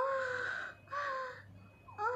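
A high-pitched voice giving two short drawn-out calls, each rising briefly and then held on one pitch for about half a second, the second starting about a second in.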